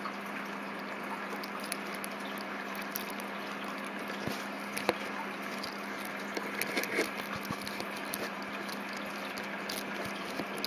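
Steady hiss and a low hum, with a few faint irregular clicks and handling noises; the wristwatch held up to the microphone ticks too quietly to stand out.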